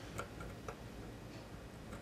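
A few faint, irregular clicks and scratches of a steel scribe marking a line on a steel bar, over a low steady hum.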